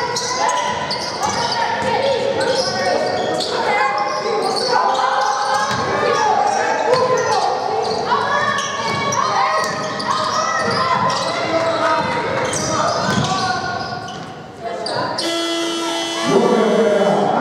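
A basketball being dribbled on a hardwood court, its bounces echoing in a large hall, with voices calling throughout. A short steady electronic-sounding tone comes in just before the end.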